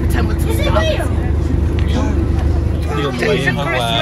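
Several people talking over one another, with a steady low rumble underneath that eases off a little past halfway.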